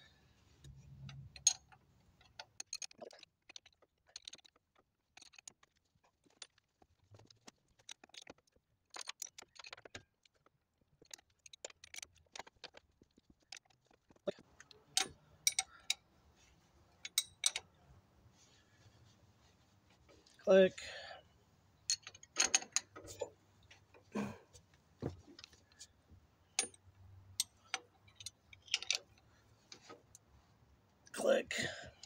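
Combination wrench clicking and clinking against the driveshaft flange bolts at the differential pinion as they are tightened by hand: irregular sharp metallic clicks, sparse at first and more frequent in the second half. A brief vocal sound about two-thirds through is the loudest moment.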